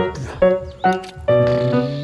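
Background music: a run of held notes, with a new note starting about every half second.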